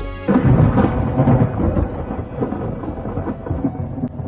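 A rumble of thunder, starting suddenly about a third of a second in, loudest over the first second, then slowly dying away.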